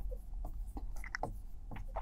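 Marker pen writing on a board: a run of short, quick scratching strokes as a word is written out, over a faint low hum.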